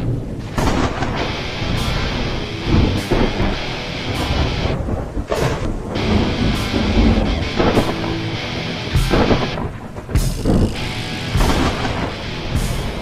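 Logo intro soundtrack: loud music mixed with deep thunder-like rumbles and a steady rain-like hiss, dipping briefly a few times.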